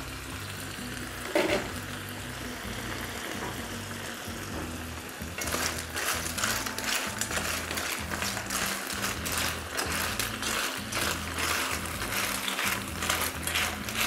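Clams sizzling steadily in a hot pan on a gas flame. About five seconds in, a wooden spoon starts stirring them, and the shells clatter against each other and the pan over the sizzle.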